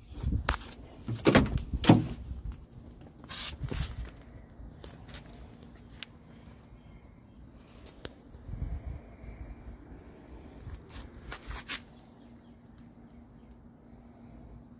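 Scattered knocks and scraping as the open door of a car is handled, the loudest two close together about one and a half to two seconds in, with further knocks later on.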